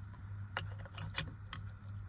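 Several light clicks and taps, about four in a second and a half, as a brushed-aluminium cover is pressed and wedged over a steering-wheel paddle shifter, over a steady low hum.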